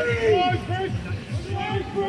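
Men's voices shouting calls around a rugby scrum, with a long falling shout near the start, over a low rumble of wind buffeting the microphone.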